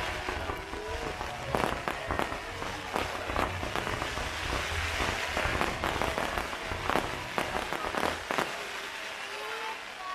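Fireworks going off: a quick run of sharp bangs and crackles over a steady fizz of burning sparks, thinning out about eight and a half seconds in.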